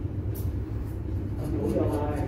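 A steady low hum, with an indistinct voice speaking briefly near the end.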